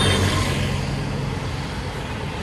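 Road traffic going by: a steady engine rumble and road noise from passing cars and auto-rickshaws, easing off slightly.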